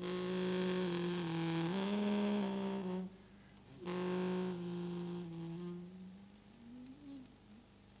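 Alto saxophone holding long, low notes with small steps in pitch. There are two phrases, of about three seconds and two seconds, with a short gap between them. Fainter gliding notes follow near the end.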